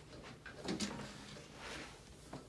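Soft rubbing and rustling of a person rolling onto their side on a padded chiropractic table, clothing sliding against the table's upholstery.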